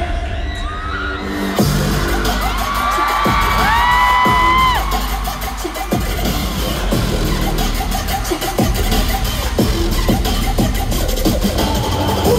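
Loud live hip-hop music over an arena sound system, recorded from the audience. A heavy bass beat kicks in about a second and a half in, and a pitched line slides up, holds and falls a few seconds later, with the crowd audible underneath.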